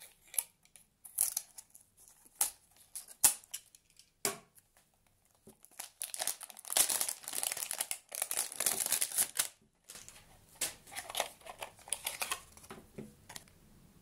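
Clear plastic shrink-wrap film being slit with a utility knife and peeled off a plastic socket housing: scattered clicks and scratches at first, then a few seconds of steady crinkling and tearing of the film.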